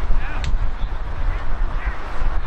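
Wind rumbling on the microphone over indistinct raised voices from a crowd of players and spectators, with short shouts breaking through.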